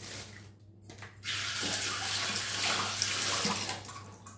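Water running from a tap: a short run at the start, then a longer steady run of about two and a half seconds that stops just before the end.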